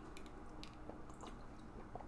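Faint sips and swallows of people drinking water, a few small wet clicks scattered through an otherwise quiet moment over a faint steady hum.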